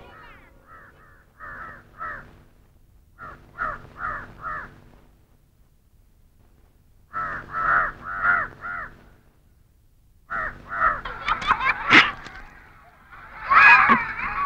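Crows cawing in short series of two to four caws, with pauses between the series; the calls crowd together near the end, where a single sharp click is heard.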